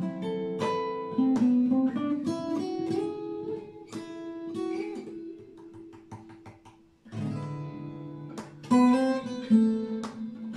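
Acoustic guitar played fingerstyle: a melody of plucked single notes over bass notes. About five seconds in, the phrase thins to one held note that rings out and fades, and fuller playing with low bass notes comes back about seven seconds in.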